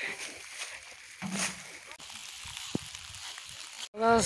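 Faint steady hiss, with a short burst of a voice a little over a second in and one sharp click later on.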